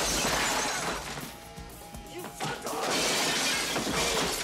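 Two crashes of shattering glass and falling store goods as a body is thrown into shelves: one right at the start lasting about a second, a second one about two and a half seconds in. Film score music plays underneath.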